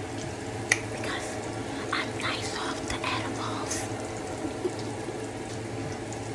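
Steady kitchen background: an even hiss over a low hum, from a fan running and food cooking on the stove, with a sharp click less than a second in.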